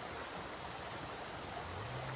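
Steady rush of a shallow spring-fed creek flowing.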